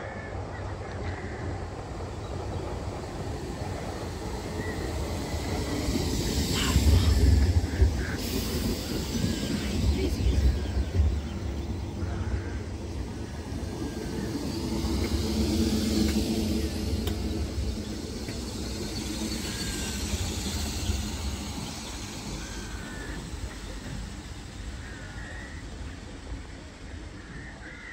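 British Rail Class 313 electric multiple unit running along the platform past the listener, a low rumble of wheels on rail swelling and fading. A few sharp wheel clicks come around the loudest moment, and a steady motor hum follows as the rest of the train goes by.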